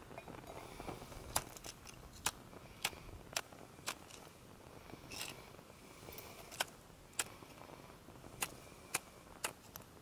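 A hand-held fire-starter striker struck again and again over a fire-starter cube: about a dozen sharp, irregular clicks and one short scrape about halfway through. The cube does not catch; it only smokes.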